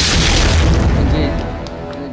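Film-trailer sound design: a deep cinematic boom hits at the start, its low rumble fading over about a second and a half, under the trailer's background music.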